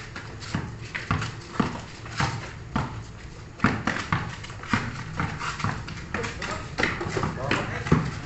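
Basketball dribbled on a concrete court, bouncing about twice a second, with players' voices calling out in the second half.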